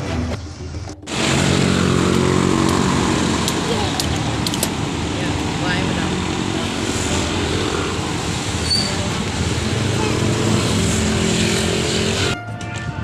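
Honda TMX motorcycle tricycle running along a road, its engine steady under a wide rush of wind and road noise. The sound starts abruptly about a second in.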